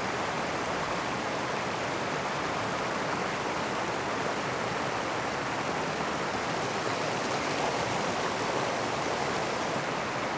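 Steady rush of river water spilling over the edge of a concrete slab bridge (low-water crossing).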